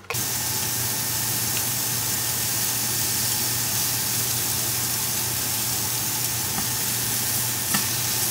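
Steak bites frying in a hot nonstick frying pan, a steady sizzle, with one light click near the end as the tongs touch the pan.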